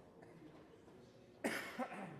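A person coughing twice in quick succession about one and a half seconds in, sudden and loud over a faint room murmur.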